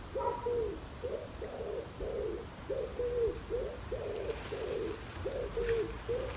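A pigeon cooing: a long run of low, repeated coo notes, about two a second.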